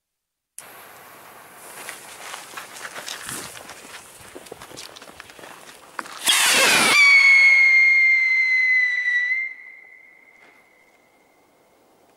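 WECO 'Tolle Lolle' sky rocket: its fuse sizzles and crackles for about five seconds, then the rocket launches with a loud rushing whoosh about six seconds in. A shrill whistle slides down a little and holds steady, then drops off sharply and fades out as the rocket climbs.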